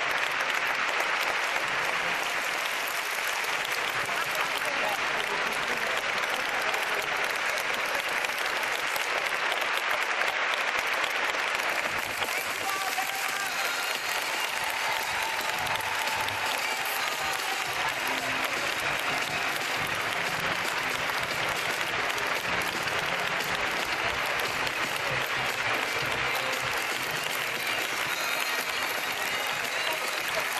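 A large audience giving a standing ovation: steady, continuous applause with no break.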